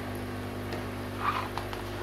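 Steady electric hum of an aquarium air pump driving the airlift filters in the fry tubs, with a brief faint rustle a little past a second in.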